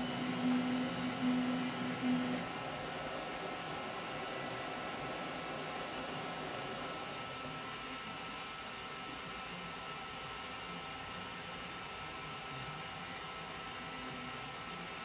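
Raise3D N2 Plus 3D printer's stepper motors whining with a pulsing tone as the print head moves, stopping about two and a half seconds in. After that there is a steady hiss of the idle machine. No knock is heard.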